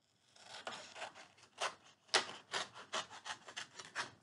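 Adult scissors snipping through black construction paper, a run of short cuts that quickens into rapid snips in the second half.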